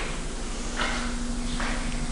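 A steady low hum from the room, with two soft rustling noises about a second apart.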